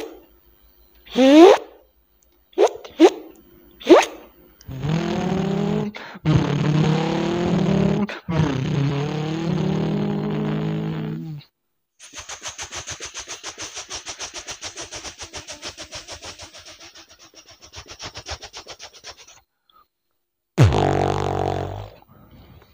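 A beatboxer imitates sounds with his mouth, one after another. First come short scraping, sweeping bursts for a zipper and a longer sustained noisy sound. Then a helicopter is done as a long run of rapid, even pulses, and near the end comes a deep bass burst for a loudspeaker.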